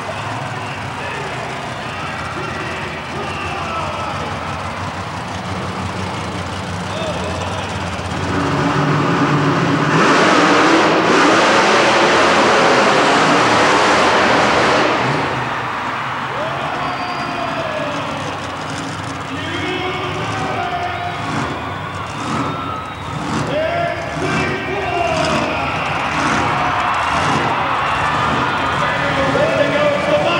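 Monster truck engines running, swelling into a much louder stretch from about eight to fifteen seconds in before dropping back.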